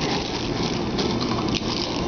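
Cellophane fortune-cookie wrapper crinkling in someone's hands, with a few sharp crackles, over a steady hiss.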